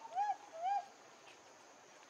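A young macaque calling: three short, arching, hoot-like calls in quick succession, over by the end of the first second.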